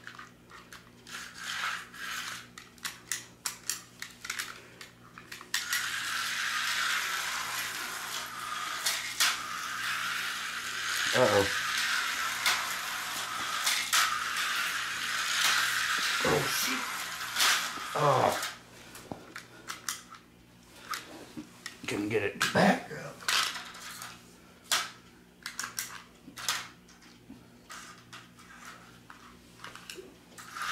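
HO-scale slot car running round a plastic track for about thirteen seconds, its small electric motor giving a steady high buzz. Before and after, clicks and rattles of the cars, controller and track pieces being handled, with several short falling whirs.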